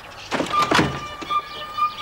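Cartoon sound effect of wooden window shutters being pushed open: a short burst of knocking and rattling about half a second in. A steady high note then begins and holds.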